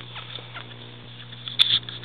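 Small dogs' paws and claws pattering and scuffling on the floor during play, with a sharp, louder clack about one and a half seconds in.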